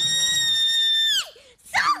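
A woman's high-pitched squeal of delight, held steady for about a second and then falling away.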